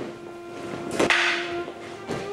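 Wooden naginata and wooden sword striking each other: a light knock at the start, then a sharp clack about a second in, followed by a swishing rush. A held string note runs underneath.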